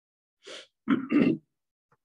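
A man clearing his throat: a short breath, then two quick, loud throat-clearing sounds about a second in.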